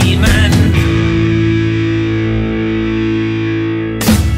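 Rock music: a few drum hits in the first second, then a distorted electric guitar chord held and slowly fading.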